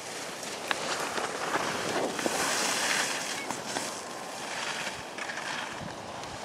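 Skis sliding and scraping over packed snow, a hiss that swells loudest in the middle, with wind rushing over the microphone.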